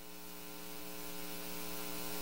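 Faint electrical mains hum with a hiss from the audio chain, steady in pitch and slowly growing louder.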